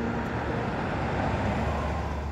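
A car driving close past on a street: steady engine and tyre noise with a low rumble that swells slightly near the end.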